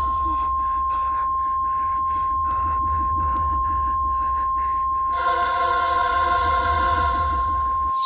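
Eerie dramatic score: one piercing high ringing tone held steady over a low rumbling drone. Choir-like voices fade out at the start, a run of rapid pulses fills the middle, and the voices return about five seconds in.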